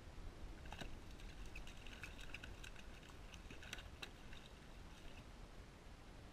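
Faint, irregular splashing and crackle at the water's surface from a hooked speckled trout thrashing beside the kayak, dying away after about four and a half seconds, over a low wind rumble on the microphone.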